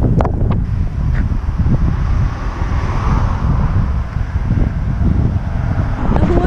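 Wind buffeting the microphone in loud, gusty rumbles, with a car passing on the highway that swells and fades in the middle.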